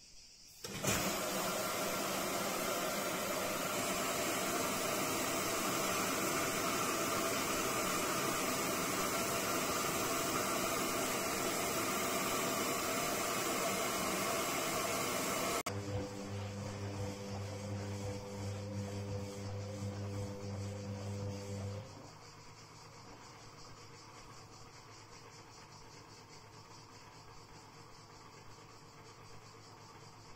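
Castor C314 washing machine starting a cottons intensive wash. Water rushes into the tub as it fills, a loud steady hiss that begins suddenly about a second in and cuts off abruptly after about fifteen seconds. A low hum from the machine follows for about six seconds, then only a faint steady sound remains.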